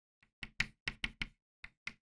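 Chalk striking a blackboard while words are written by hand: about eight short, irregular taps in quick succession.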